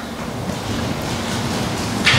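Steady rushing hiss of room tone in a large church hall, with no distinct events.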